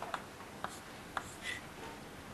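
Chalk writing on a blackboard: a few faint taps and short scratches as letters are stroked on.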